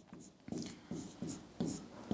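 Stylus writing on an interactive smart-board screen: a series of short, quiet pen strokes as a word is written.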